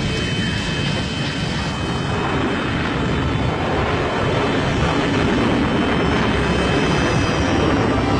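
Sound effect of a flying craft's engine in a cartoon: a steady rushing jet-like drone that grows a little louder about halfway through.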